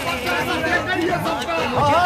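Several people talking at once: overlapping crowd chatter.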